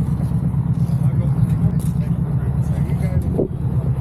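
Yamaha Bolt motorcycle's air-cooled V-twin engine idling with a steady low throb.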